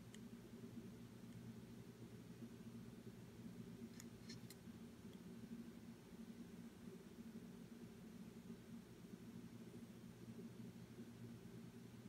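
Near silence: room tone with a low steady hum, and a few faint clicks about four seconds in.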